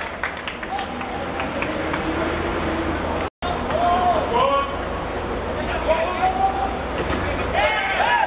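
Footballers' voices calling out in short shouts across the pitch, over a steady low rumble, with a brief dropout in the sound about three seconds in.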